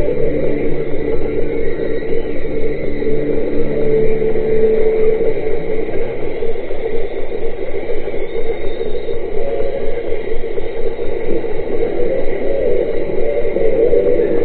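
Live rock concert recording playing from a computer and picked up muffled and distorted by the camera's microphone: held chords that change every second or so over a steady low rumble.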